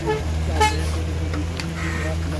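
Wheel loader's diesel engine running with a steady low drone as it lifts a loaded bucket, with a brief high-pitched tone about half a second in.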